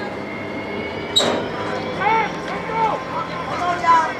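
Short shouts from players and sideline voices as a football play gets under way, with a sharp, high, brief cry about a second in. Under them runs a low steady hum from a diesel locomotive near the field.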